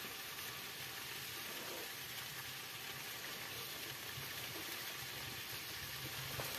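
Food sizzling steadily in a frying pan on a wood-burning tent stove.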